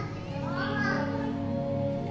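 Children's voices calling and chattering, loudest about half a second to a second in, over background music with steady held tones.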